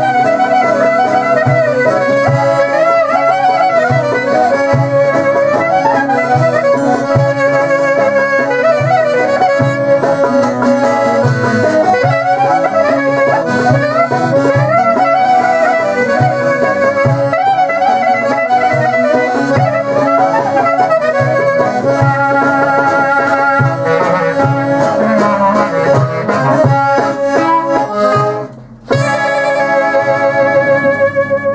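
Greek folk clarinet playing a fast, heavily ornamented melody over a steady beat from laouto, accordion and percussion. The band breaks off briefly about a second before the end, then comes straight back in.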